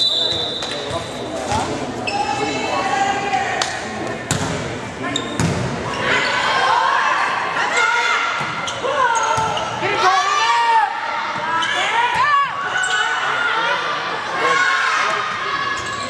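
Many voices of spectators and players talking and calling out in a reverberant gymnasium during a volleyball match, with a few sharp ball hits in the first few seconds.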